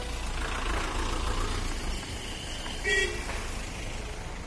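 Road traffic noise on a bridge with a steady low rumble, and a short vehicle horn toot about three seconds in.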